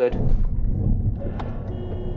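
Low, steady rumble of engine and road noise picked up by a car's dash camera as the car slows beside an articulated lorry, with one sharp click about a second and a half in.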